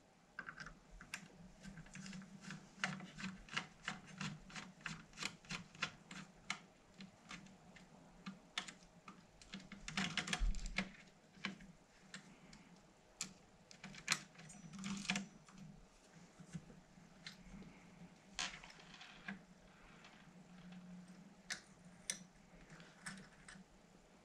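Screwdriver turning out the screws that hold a heatsink to a Sinclair QL circuit board: faint small clicks of the tip on the screws, about two or three a second for the first ten seconds or so, then scattered clicks and handling noises.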